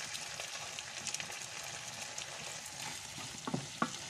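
Meat cubes and tomato sauce frying in a pan with a steady crackling sizzle. A wooden spatula stirs them, striking the pan twice in quick succession near the end.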